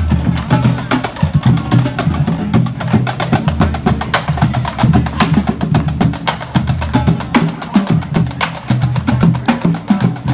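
Marching drumline playing: dense, sharp snare-drum and stick hits over pitched bass-drum and tenor-drum strokes.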